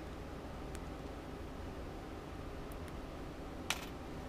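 Quiet hand sewing: a needle and thread worked through layered denim and fleece, with a few faint ticks and one sharper click near the end, over a steady low room hum.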